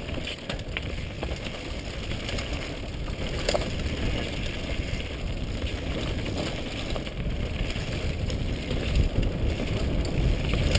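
Helmet-mounted GoPro HD camera on a downhill mountain bike at speed: wind rumbling on the microphone over tyres running on a dirt and gravel trail, with scattered rattles and clicks from the bike, a sharper knock about three and a half seconds in. It grows louder toward the end as the bike picks up speed.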